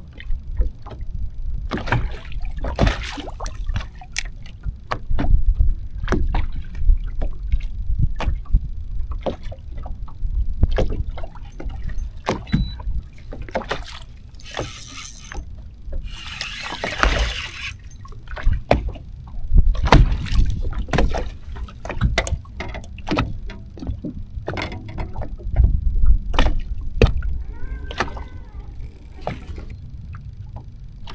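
Small waves lapping and slapping against a bass boat's hull in many short, sharp slaps, over a steady low rumble of wind on the microphone. Two brief hissing bursts come about halfway through.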